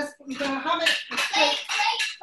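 Speech only: people talking, with no other sound standing out.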